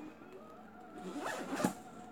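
A zipper being pulled open or shut, a short rasp about a second in.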